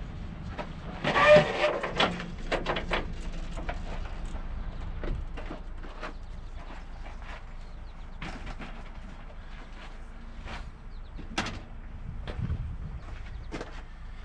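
A bicycle being lifted off a truck-mounted rack: a loud metallic rattle about a second in, then scattered light clicks and knocks of the bike and rack parts, over a low steady rumble.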